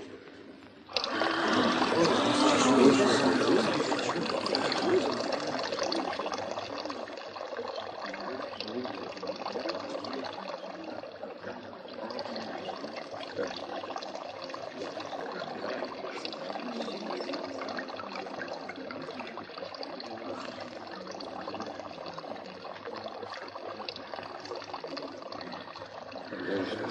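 Water gushing from the spout of a carved stone spring fountain. It starts suddenly about a second in, is strongest in the first few seconds, then settles into a steady flow.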